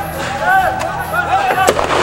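Several short shouted calls that rise and fall in pitch, from voices during a prison riot, with sharp bangs between them. One loud crack comes near the end.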